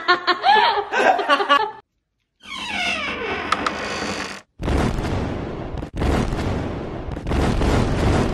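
People laughing heartily for about two seconds. After a short silence comes a falling, pitched sound, then a long, loud, dense noise of unclear source.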